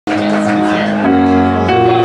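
Live band music: held keyboard chords, changing about once a second.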